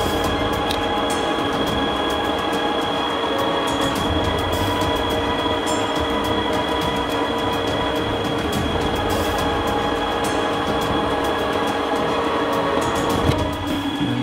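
Metal lathe running with its chuck spinning, turning the outside of a tubular part: a steady whine with several constant tones and faint irregular ticks. The machine stops about 13 seconds in.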